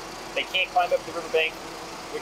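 A man speaking to reporters in short phrases, over a steady low background hum.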